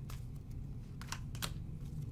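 Tarot cards being shuffled by hand: a handful of irregular sharp clicks of card against card over a low steady hum.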